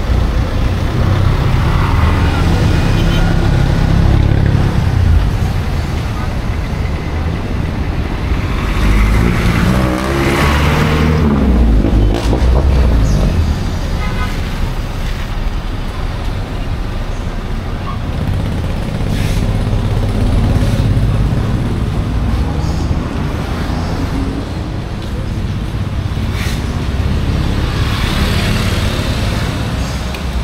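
Street traffic on a wet road: cars and motorcycles running past, with one vehicle passing close about ten seconds in, its pitch sweeping as it goes by.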